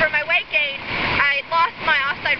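A woman talking, over a steady rush of flowing river water.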